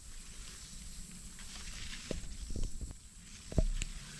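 Quiet outdoor field ambience, a steady faint hiss over a low rumble, with a few soft knocks and rustles of the handheld camera moving through the plants, the loudest about three and a half seconds in.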